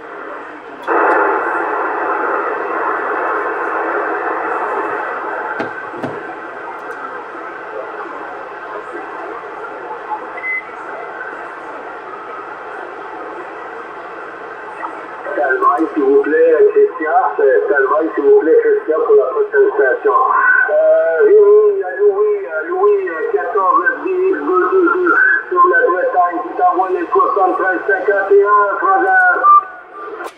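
Radio receiver tuned to 27.625 MHz in upper sideband: steady narrow-band static hiss for about the first fifteen seconds, then a distant station's voice coming through the static for the rest of the time.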